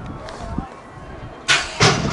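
BMX starting gate dropping: two loud, short metallic slams close together about one and a half seconds in, releasing the riders onto the start ramp.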